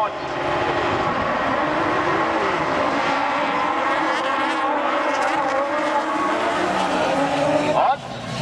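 Several autocross buggies racing together, their engines running hard at high revs in a steady dense mix, with pitches weaving up and down as the drivers shift and lift.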